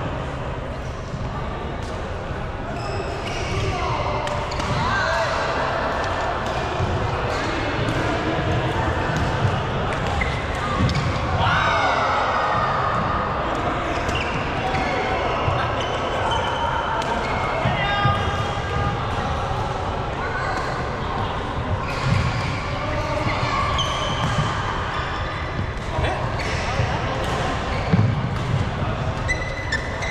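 Badminton being played in a large, echoing sports hall: sharp racket hits and thuds of feet on the court, recurring throughout, under indistinct voices.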